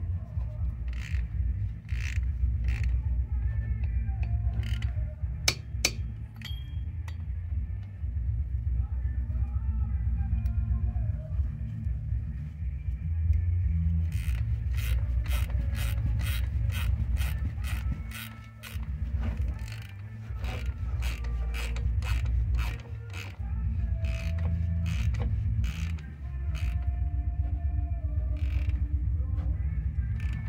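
Hand ratchet wrench clicking in short runs as nuts on a truck's front hub are turned, the clicks coming thick and fast from about halfway through, over a steady low hum.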